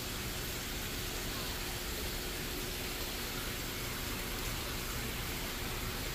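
Steady rush of moving water in a large fish pool, from a water outlet churning the surface, with a faint steady hum underneath.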